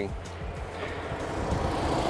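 Road traffic: a vehicle passing on the road, its rushing noise swelling louder toward the end.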